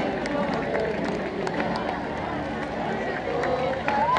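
Outdoor crowd of parade spectators and marchers, many voices talking and calling at once, with scattered short sharp clicks.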